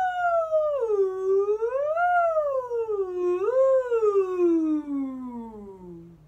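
A woman's singing voice holds one unbroken note that starts high and slides downward, rising briefly twice along the way before gliding steadily down to a low pitch near the end. It is a high-to-low vocal slide exercise.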